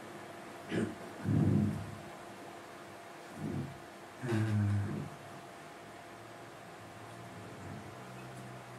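Mostly steady low room hum in a hall, broken by a few short spoken words and hesitations from a man.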